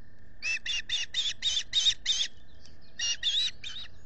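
Osprey calling close to the microphone: a quick series of about seven shrill whistled chirps, then three more after a short pause.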